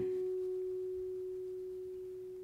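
A steel-string acoustic guitar with one fretted note on the G string ringing out alone, a single clear pitch that fades evenly.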